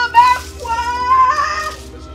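A woman yelling in a very high, strained voice: a short cry, then one long drawn-out cry.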